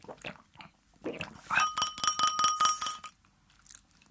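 A few soft mouth and chewing sounds, then a stemmed drinking glass tapped rapidly, about seven light strikes a second for a second and a half, each strike setting the glass ringing with a clear, steady pitch.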